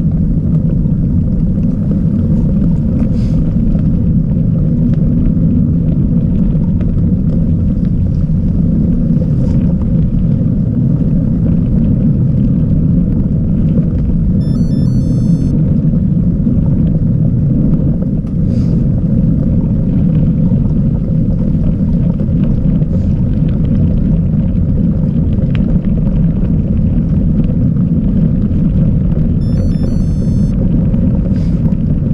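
Steady low rumble of wind buffeting an action camera's microphone and tyres rolling over a dirt trail as a mountain bike is ridden along, with a few faint ticks from the bike over bumps.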